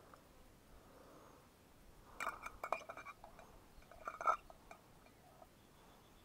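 Metal camp cookware clinking: two short clusters of knocks and rings, about two seconds in and again about four seconds in, as the mug and pot are handled and set on rock.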